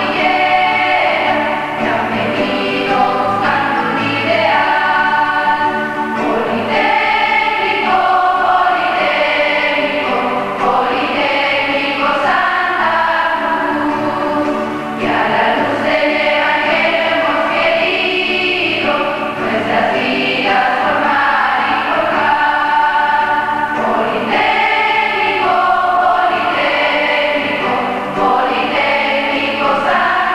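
A large choir of schoolgirls singing the school hymn, in phrases of held notes.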